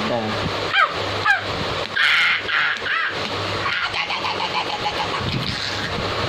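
A toddler's short high-pitched squeals and shrieks in play, the first few sliding down in pitch, with a louder cry about two seconds in, over a steady low hum.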